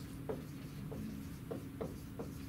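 Marker pen writing on a whiteboard: a few short, faint strokes as a word is written.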